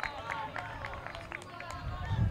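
Several players' voices calling and shouting across an open football pitch, with scattered sharp clicks.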